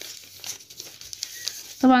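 Pattern paper rustling and crinkling as hands fold and press a pleat into the sheet.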